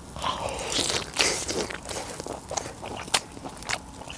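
Close-up chewing of a mouthful of grilled Jeju black pork (뒷고기, pork cheek and neck trimmings), with irregular sharp clicks and crunches as it is chewed.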